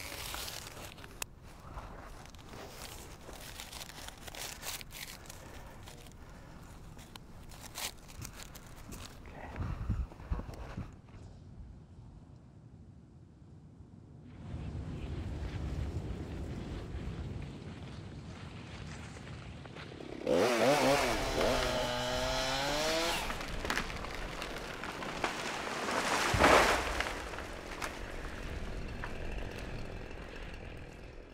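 Two-stroke chainsaw at work felling trees: faint at first, then running steadily from about halfway through, with a loud rev whose pitch drops from about 20 to 23 seconds in and another loud burst a few seconds later.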